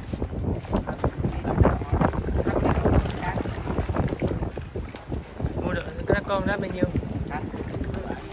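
Wind buffeting the microphone in a fluctuating low rumble, with indistinct voices in the background and a short burst of voice about six seconds in.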